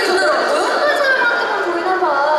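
Speech only: talking over microphones, with overlapping chatter.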